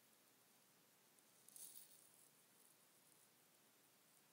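Near silence, with one faint, brief high-pitched rustle about one and a half seconds in.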